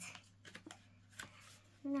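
A square of origami paper being handled and folded by hand: a soft rustle, then a few brief crinkles and taps of the paper.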